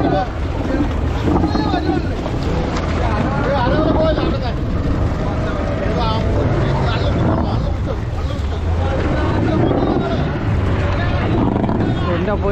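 Several men's voices talking and calling out, over a steady low rumble of the boat and wind on the microphone.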